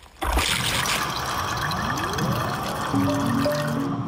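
Water pouring and splashing out of a bottle in a steady rush. A rising tone joins partway through, and music with held notes comes in about three seconds in.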